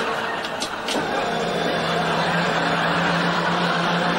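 Electric dental chair motor reclining the chair, a steady low hum starting about a second in.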